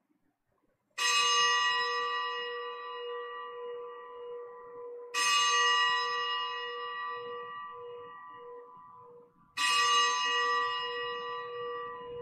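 A bell struck three times, about four seconds apart, each stroke ringing out and slowly fading. It is the consecration bell rung at the elevation of the chalice during Mass.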